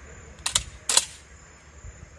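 Huglu GX812S 12-gauge shotgun's action being worked: two sharp metallic clacks about half a second apart, the second louder, as a round is chambered.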